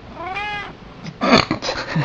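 A domestic cat gives one short meow, rising then falling in pitch, about a third of a second in. About a second later louder human laughter breaks in.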